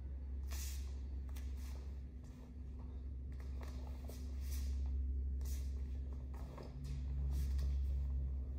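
Taekwondo uniforms swishing and bare feet scuffing on foam mats as kicks and spins are thrown, a short swish about every second, over a steady low hum of the hall.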